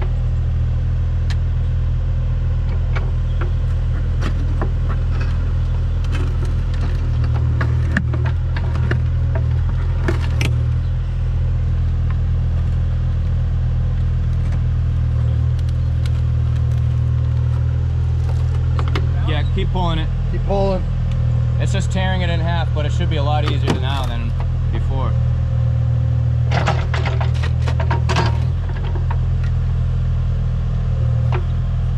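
Kubota KX040-4 mini excavator's diesel engine running steadily under load while digging, with occasional knocks and scrapes of the steel bucket in the soil and a cluster of knocks late on.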